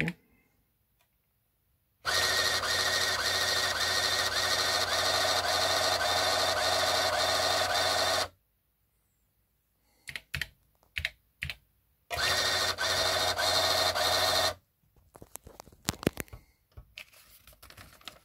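Rockwell AIM-65's built-in 20-column thermal printer running in two stretches, about six seconds and then about two and a half seconds, printing program output and a listing. A few sharp clicks fall between the two stretches, with fainter scattered clicks after the second.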